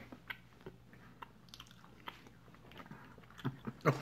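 Jelly beans being chewed close to the microphone: faint, irregular wet clicks and smacks of the mouth. Near the end comes a voiced "oh" of disgust at the taste.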